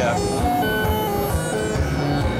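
Synthesizer driven by a Kilpatrick Audio Carbon step sequencer, playing a random, scale-quantized pattern of short notes that step between pitches over a low pulsing bass.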